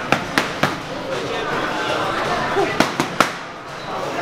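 Boxing gloves smacking into focus mitts: a quick combination of three sharp strikes at the start and another of three near the end, over a murmur of voices.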